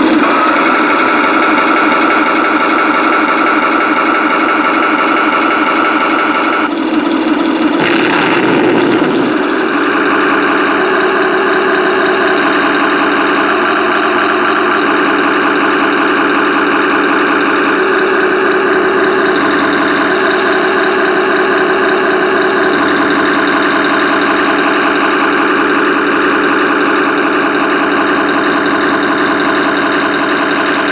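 Radio-controlled Tiger I tank model's onboard sound unit playing a simulated tank engine, running steadily. Its pitch steps up and down several times as the throttle changes.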